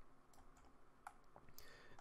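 Near silence with a few faint computer mouse clicks about halfway through.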